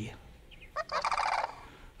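Sandhill cranes calling, heard as a recording played back into the room: one brief rolling rattle that starts about a second in and lasts under a second.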